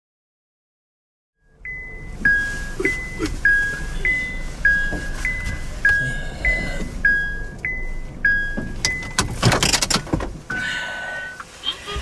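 A phone ringtone: short electronic beeps alternating between a higher and a lower pitch, about two a second, for some seven seconds. A brief rustling burst follows, then one longer single beep as the call is picked up.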